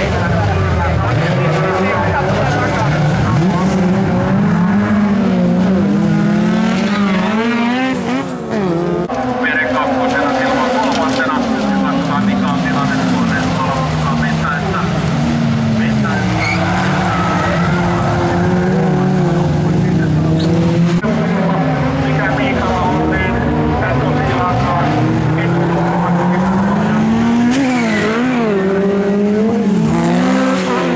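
Several folk-race cars, mostly old VW Beetles, racing together. Their engines rev up and drop off again and again through the corners, several engines overlapping.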